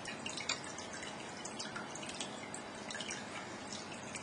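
Faint, steady background hiss with many small, irregular ticks scattered through it.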